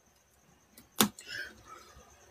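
A single sharp knock or click about a second in, followed by a brief faint rustle.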